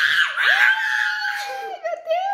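Playful screaming by a young girl and a woman: a loud burst at first, then one long, high held scream that tails off near the end.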